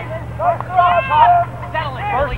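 Several raised voices shouting and calling out across a lacrosse sideline, over a steady low hum.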